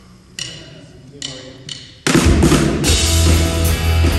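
Three sharp stick clicks counting in, then about two seconds in a live rock band starts loudly with electric guitars, bass and drums.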